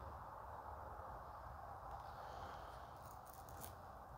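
Near silence: faint steady room tone, with a few faint high ticks about three seconds in.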